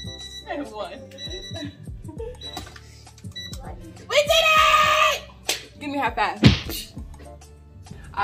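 Woman laughing and giving a loud, drawn-out shout about four seconds in, over background music. Short high electronic beeps sound at the start and twice more in the first few seconds as the workout timer runs out.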